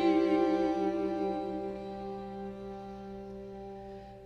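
String quartet holding a sustained chord that slowly fades, with a wavering vibrato in a middle part during the first second or so before the tones settle and thin out.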